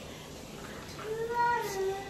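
A child's single drawn-out vocal note, held for under a second and falling slightly in pitch at the end, after about a second of quiet room tone.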